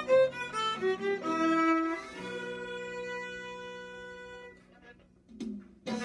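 Solo violin played with the bow: a few short notes, then one long held note that fades out about four and a half seconds in. After a brief pause the playing starts again at the very end.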